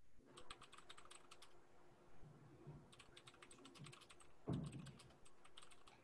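Faint typing on a computer keyboard: two runs of quick keystrokes, one in the first second and a half and another around the middle, followed by a soft bump.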